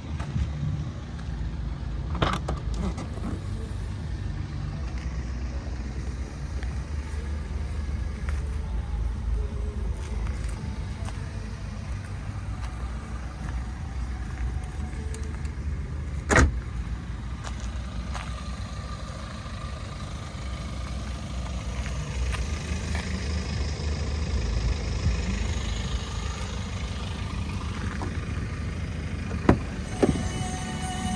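BMW 320d Touring's 2.0-litre four-cylinder diesel idling steadily, a low even rumble. Sharp clicks sound once about halfway through and again just before the end, as a rear door is opened.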